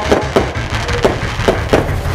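Fireworks going off in a quick, uneven series of sharp bangs, about six in two seconds, with music held under them.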